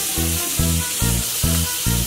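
Tap water running steadily into a bathroom sink while hands are rinsed under it, over background music with an even beat of about two and a half thumps a second.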